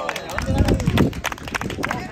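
Voices of players and spectators talking, with many short sharp claps or clicks and a low rumble about half a second to a second in.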